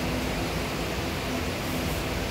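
Steady, even hiss of background noise with a faint low hum, no distinct events.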